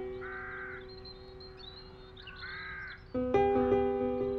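A crow caws twice, about two seconds apart, each caw about half a second long, with faint small-bird chirps above. Under it, soft piano music holds a fading chord, and a new chord is struck near the end.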